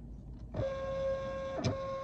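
Rollo thermal label printer's feed motor running with a steady whine as it draws in a newly loaded shipping label, starting about half a second in, with a sharp click near the end.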